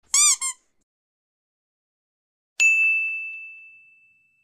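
Duck quack sound effect: two quick quacks. About two and a half seconds later comes a bright metallic 'ting', struck once, that rings on one high note and fades away over about a second and a half.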